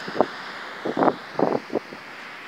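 Wind buffeting the microphone in short, irregular gusts over a steady background rush of surf.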